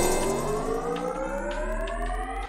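Cartoon laser-beam sound effect: a sustained electronic whine of several stacked tones, slowly rising in pitch.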